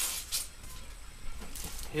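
Packaging rustling and sliding as a computer monitor is pulled out of its box: a couple of brief hissy rustles at the start and another near the end.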